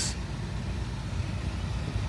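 Steady low rumble of vehicle engines in the background.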